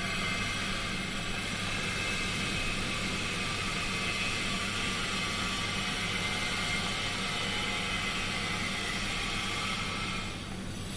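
Blue silica gel beads pouring in a steady stream from a plastic bag into a transformer's silica gel breather, a continuous rattling hiss as the fresh desiccant refills it. A steady low hum runs underneath.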